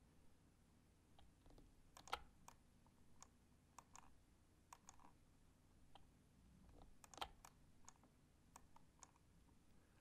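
Near silence with faint, irregular clicks of a computer mouse and keyboard, a couple of dozen in all, bunched around two moments.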